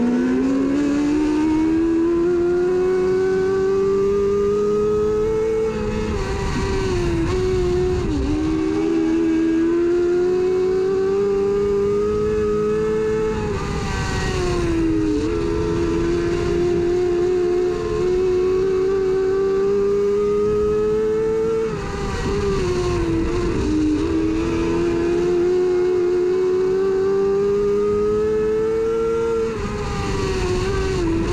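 Dirt-track mini late model race car's engine heard from inside the cockpit, running hard. Its pitch climbs steadily down each straight, then falls back briefly as the throttle is lifted for the turns, four times, roughly every eight seconds.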